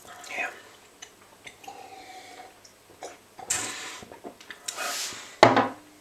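A person sipping and slurping fizzy orange soda from a glass, with a short hum, and a sharp knock of the glass near the end.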